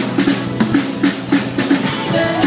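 Live rock band playing an instrumental stretch between sung lines, with the drum kit to the fore over short repeated electric bass notes and strummed acoustic guitar.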